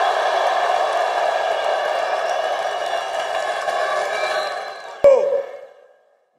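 A huge open-air rally crowd cheering and shouting, a dense steady sound of many voices together. It fades away near the end, with a sharp click about five seconds in.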